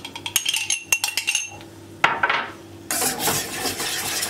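A run of sharp clinks in the first second and a half, then, from about three seconds in, steady scraping as a metal spoon stirs cream in a stainless steel saucepan while the cream is brought up to heat.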